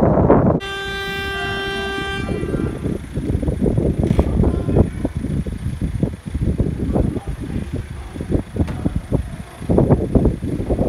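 A car horn gives one long steady honk of nearly two seconds, starting just under a second in. Rough, uneven street and microphone noise follows.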